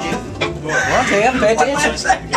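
The string music breaks off, and about half a second in a person's voice starts cackling in quick, wavering, chicken-like clucks.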